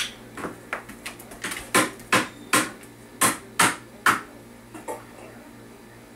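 A dog's claws clicking and tapping on a hard kitchen floor as it moves, in an irregular run of sharp taps, about two or three a second, that stops about five seconds in.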